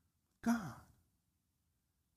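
A man's voice saying one word, "God," with a falling pitch about half a second in, then silence for the rest.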